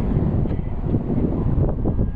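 Wind buffeting the camera microphone: an uneven low rumble.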